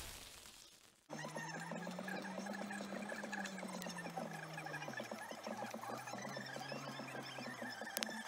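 A car driving slowly over a bumpy dirt track, heard from inside the cabin. The engine runs at a low pitch that rises and falls slowly and drops about five seconds in, with many small rattles and knocks from the bumps. In the first second a loud intro sound effect fades out.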